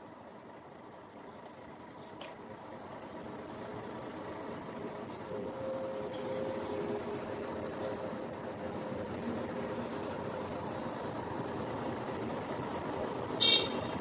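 Street traffic with a motor vehicle engine running, growing louder over the first several seconds and then holding steady.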